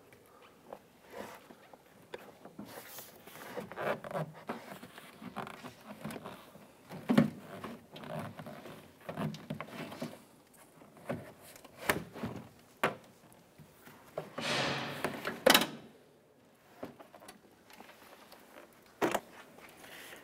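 Handling noise from a car door trim panel being lifted off the door: scattered plastic clicks, knocks and rustling. There is a sharp knock about seven seconds in and a louder scraping rustle just before the fifteen-second mark.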